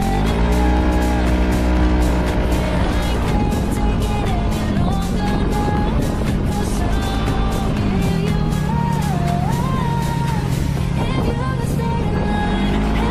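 Background music with a steady beat over a Yamaha Majesty S scooter's engine, whose note rises as it pulls away and then settles at cruising speed.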